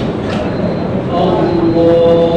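Murmur of a large seated congregation in a mosque hall; about a second in, a man's voice begins chanting in long held notes.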